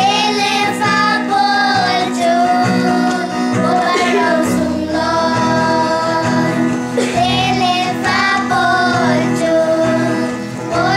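A group of children singing a song together, with an instrumental backing holding steady low notes under the melody.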